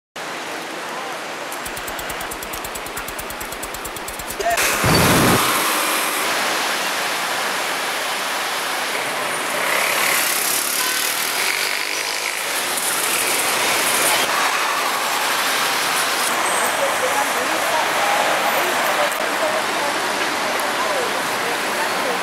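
Busy city avenue street ambience: traffic and the voices of passers-by. A rapid, even rattle runs from about two seconds in until about four and a half seconds, followed by a loud, low rush of a passing vehicle about five seconds in.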